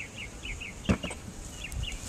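A bird chirping over and over in short falling notes, several a second, with a single sharp knock about a second in.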